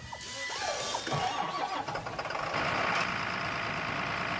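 An engine cranking and starting, then running steadily, under outro music.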